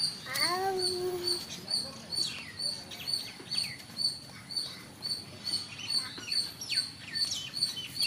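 Birds calling: a short high note repeated evenly, two to three times a second, with several downward-sliding whistles in between. A person's drawn-out vocal call is heard briefly just after the start.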